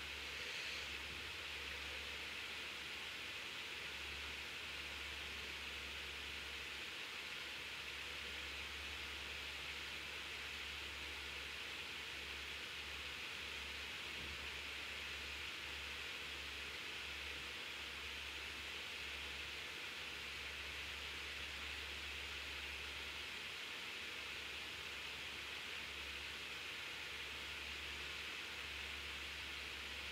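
Steady background hiss, with a low hum underneath that cuts out briefly now and then.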